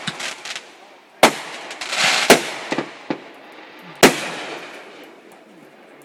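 Aerial fireworks going off: a string of sharp bangs, the loudest about two and four seconds in, with a stretch of crackling around two seconds, then the reports die away.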